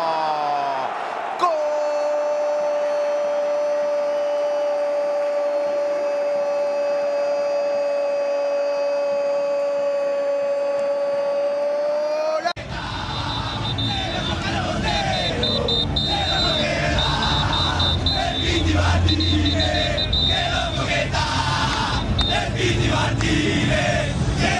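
A Spanish-language football commentator's long held goal cry, one steady unbroken note of about eleven seconds that stops abruptly about halfway in. Then a stadium crowd chanting and singing over music.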